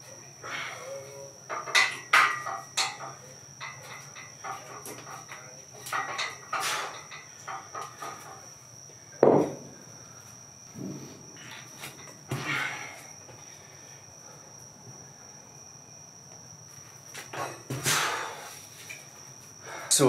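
Iron weight plates clanking and knocking as they are handled and set down, with one heavy thump about nine seconds in. A faint steady high whine runs underneath.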